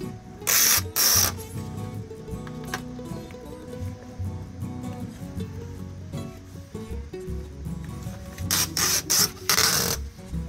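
Background music with a steady bass line throughout. Over it come short, loud tearing hisses: the red release tape is peeled off a keel guard's adhesive strip twice about half a second in and three times near the end.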